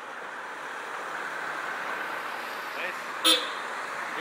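Cars driving past with steady traffic noise that builds slightly, and one short car-horn beep about three seconds in.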